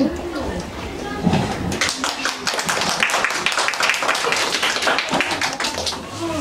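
Audience applause, many hands clapping, beginning about two seconds in and going on for about four seconds.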